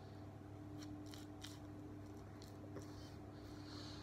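Faint soft swishes and rustles of a tint brush spreading hair dye through hair, a few in the first half and a couple around three seconds in, over a steady hum.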